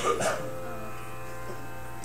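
Steady musical drone of several held tones with no rhythm, the background pitch reference for the chanting, with a brief vocal sound right at the start.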